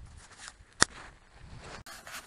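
A single sharp click about a second in, over a faint low outdoor background.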